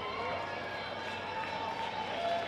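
Indistinct voices of a concert audience talking among themselves, with a low steady hum underneath.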